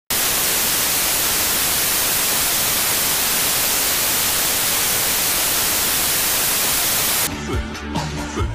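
Television static: a loud, steady, even hiss of an untuned analog TV. About seven seconds in it cuts off abruptly and music with a bass line takes over.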